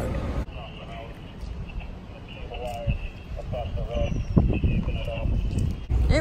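Outdoor ambience with faint, distant voices and a steady high-pitched hum, and one brief knock just after the middle.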